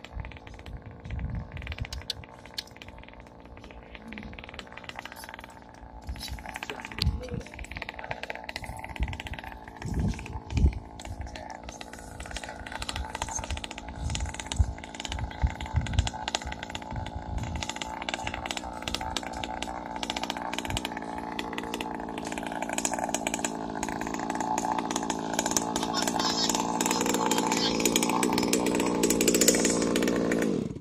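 Small two-stroke gas engine of a Primal RC dragster idling steadily, growing louder over the last several seconds.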